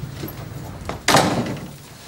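A door pushed shut about a second in: one sudden bang that dies away quickly.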